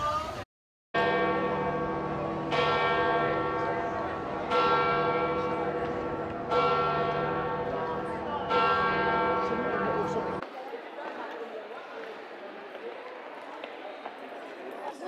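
A large church bell tolling, five strikes about two seconds apart, each ringing on as it fades. The ringing cuts off abruptly about ten seconds in, leaving a faint murmur.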